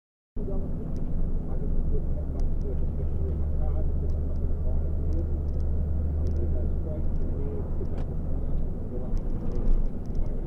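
Steady low drone of a car's engine and road noise heard inside the cabin while driving at about 30 mph, with faint, indistinct talk underneath. A single click about eight seconds in, and the drone eases off just before the end.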